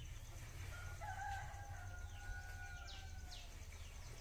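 A rooster crowing once: one long call starting just under a second in and trailing off slightly lower, with small birds chirping in short falling notes near the end.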